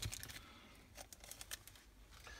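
Thin plastic bag crinkling faintly as a clear plastic model-kit sprue is pulled out of it, with a few light ticks.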